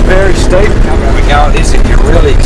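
Nissan Patrol 4WD running up a steep dirt track, its engine a steady low rumble throughout. A person's voice talks over it the whole time.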